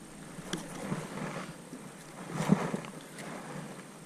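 Quiet handling sounds in a small fishing boat: a sharp click about half a second in and a few soft knocks and rustles, the loudest about two and a half seconds in, over a faint steady hiss.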